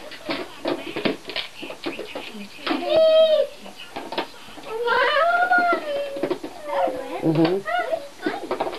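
Toddlers making wordless high-pitched vocal sounds: a short call about three seconds in and a longer rising-and-falling one about five seconds in, with another near the end. Light clicks and knocks of plastic toys being handled run underneath.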